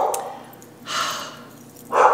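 A woman breathing between remarks: a short breath about a second in, then a longer exhale that starts near the end and fades.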